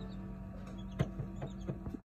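Small egg incubator humming steadily, with a few light taps and clicks about halfway through and near the end.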